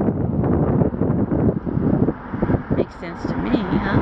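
Strong wind buffeting the microphone in gusts, a loud rumbling rush that eases somewhat after about two seconds.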